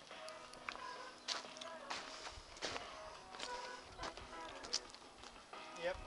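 A man's voice calling faintly from a short way off, with scattered light knocks and footsteps.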